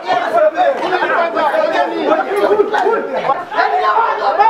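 Many voices talking over one another at once, the excited chatter of a tightly packed group of people.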